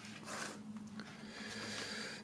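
Faint rustling of paper and card as a paper photo strip is picked up out of a cardboard box, with a light tick about a second in.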